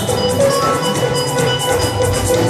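Live band music: sustained keyboard tones over drums, with evenly repeated cymbal strikes.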